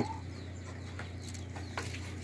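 Chickens clucking faintly, with a short rising call just after the start, over a steady low hum.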